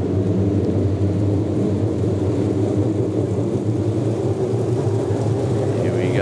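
A pack of TQ midget race cars running together at pace speed, their engines making a steady, even drone.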